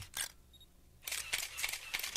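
Faint, irregular sharp clicks, with a short stretch of near silence about a third of a second in before the clicks start again.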